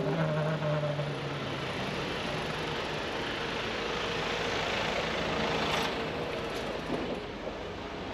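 A large tour coach's engine running close by, over the steady noise of street traffic. A short hiss comes about six seconds in.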